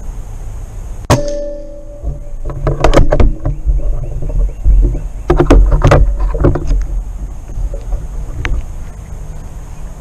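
A single sharp shot from a Benjamin Kratos .25 calibre PCP pellet rifle about a second in, with a brief ringing after it. Several louder irregular bursts of noise follow over the next few seconds.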